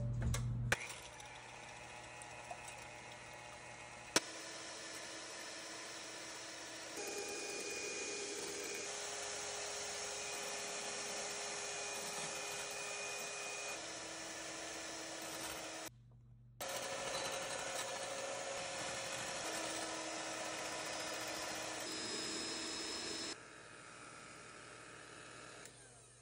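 Electric hand mixer whipping egg whites and sweetener into meringue in a glass measuring cup: a steady motor hum whose pitch shifts several times, with a short break just past the middle.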